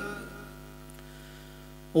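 Steady electrical mains hum from a microphone and amplifier chain, a stack of even, unchanging tones, heard once the chanted voice has faded out in the first half second.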